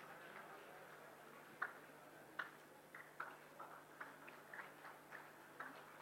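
Faint, scattered handclaps from an audience giving a standing ovation: single sharp claps at first, coming more often toward the end.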